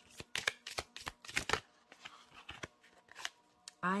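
A deck of oracle cards being shuffled by hand: a quick run of card snaps for about the first second and a half, then a few scattered clicks.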